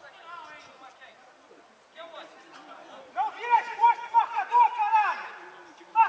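Distant shouting voices on a football pitch. From about three seconds in comes a loud run of short, high repeated calls, about three a second, lasting about two seconds.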